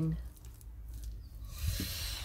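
Hands squeezing and smoothing a rag soaked in wet cement slurry, with a brief wet hiss about a second and a half in.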